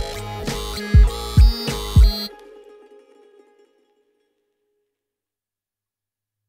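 Live electro hip-hop loop: deep kick drums that drop in pitch, about two a second, under layered synth tones. The whole loop cuts off suddenly a little over two seconds in, leaving a short fading echo and then silence.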